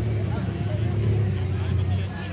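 Toyota HiAce van's engine running with a steady low hum as the van pulls away at low speed, with people talking around it.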